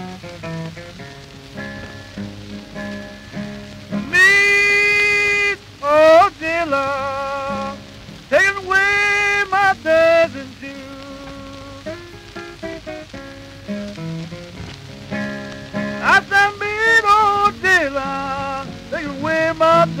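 Country blues: a man singing long, wavering phrases to his own acoustic guitar, the voice coming in about four seconds in and again near the end, with the guitar picking alone in between. An even hiss and crackle of an old record lies under it all.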